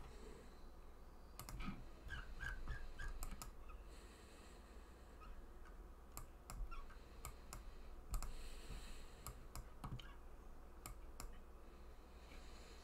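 Faint, scattered clicks of a computer mouse and keyboard, a few at a time with short gaps between.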